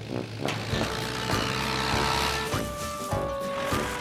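Small tractor engine running steadily as it drives along, with gentle background music playing over it.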